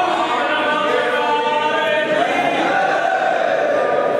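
Several voices singing a Hindu devotional arti hymn together in slow, long-held notes.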